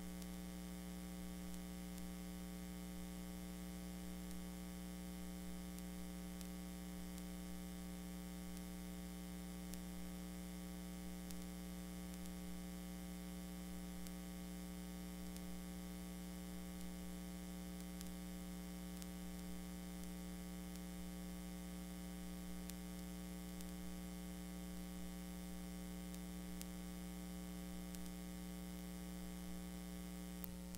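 Steady electrical mains hum: a low buzz with a string of higher overtones over a faint hiss, unchanging throughout, with no programme sound.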